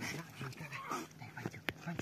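Australian Cattle Dog whining in short calls over faint water noise, with one sharp click near the end.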